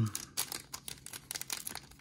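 Foil wrapper of a Magic: The Gathering set booster pack crinkling as it is turned over in the hands, a run of small, irregular crackles.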